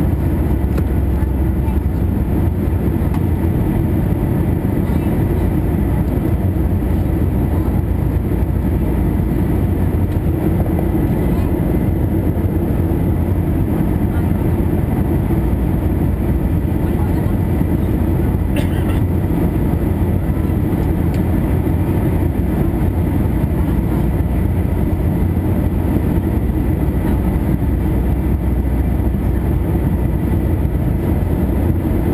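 Steady roar of an Airbus A321's jet engines and rushing air heard inside the cabin during the climb after takeoff, deep and unchanging.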